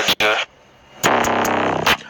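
A voice in a TikTok clip's original sound: a few quick syllables at the start, then one drawn-out voiced note lasting about a second.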